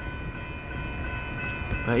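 A long Union Pacific coal train's cars rolling through: a steady low rumble with a faint steady high whine over it.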